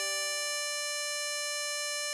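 A 24-hole tremolo harmonica holding one long draw note on hole 10, the D5, steady and unbroken.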